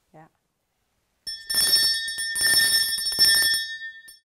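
A bell ringing for about two and a half seconds, starting just over a second in with a short dip partway: a school bell marking the break.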